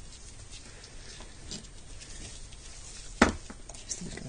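Faint handling noise, then one sharp click about three seconds in, followed by a few lighter ticks, as the old ignition condenser is set down on the workbench.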